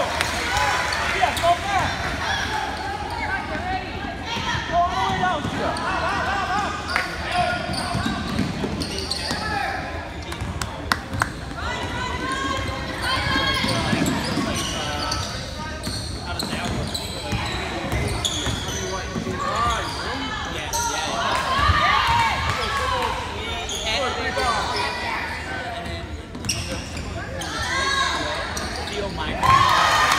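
Basketball game heard from the stands of a gymnasium: players and spectators calling out, with the ball bouncing on the hardwood floor. A referee's whistle blows just before the end.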